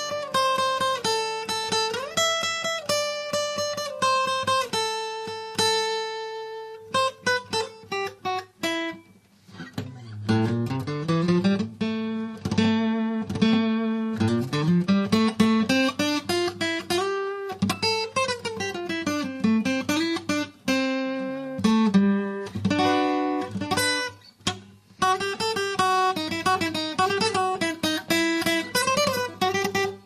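A LAG Tramontane T333JCE acoustic guitar played fingerstyle: plucked melody notes ring over bass notes. Through the middle stretch several notes slide up and down in pitch. There are two brief pauses, about ten seconds in and near twenty-four seconds.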